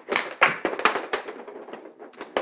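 A quick run of sharp clacks and taps, four or five in two seconds: a hockey stick hitting pucks and the plastic shooting pad.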